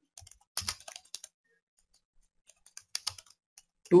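Keystrokes on a computer keyboard: scattered key clicks in two short runs of about a second each, with a quiet pause of over a second between them.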